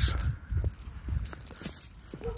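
Light metallic jingling, brief and brighter near the end, over uneven low rumbling on the microphone.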